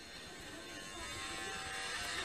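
Electric hair clippers buzzing, heard from a haircut video playing on a computer. The buzz grows gradually louder.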